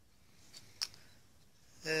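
Two brief light clicks of metal magneto cam rings being handled, about half a second and just under a second in, against quiet room tone.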